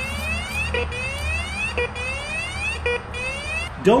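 Bounty Hunter Mach 1 metal detector sounding its overload alarm: a short beep followed by a rising electronic sweep, repeated four times at about one a second, then stopping. It is set off by aluminium foil held close to the coil, which the detector reads as a very large or highly conductive target.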